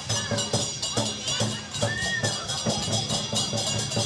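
Lion-dance percussion band playing: a drum and clashing cymbals striking in a quick, even rhythm, with crowd voices underneath.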